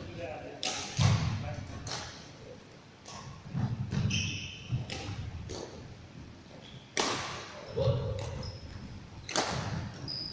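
Badminton rackets hitting shuttlecocks: about half a dozen sharp, short hits one to two seconds apart, each ringing on briefly in the hall, the loudest two in the second half.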